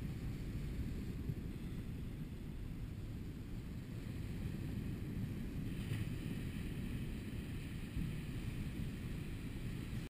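Wind buffeting the microphone: a steady, gusty low rumble.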